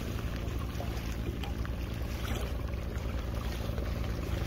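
Outboard motor of a small rescue boat idling steadily, a low even hum, with wind noise on the microphone over it.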